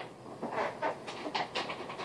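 Quick, breathy panting: a run of short breaths, about five or six a second.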